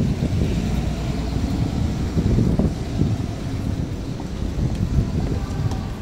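City street ambience: a steady low rumble of wind buffeting the microphone mixed with road traffic, rising and falling without any single distinct event.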